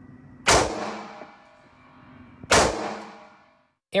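Two rifle shots about two seconds apart, each followed by a long ringing echo in an indoor shooting range.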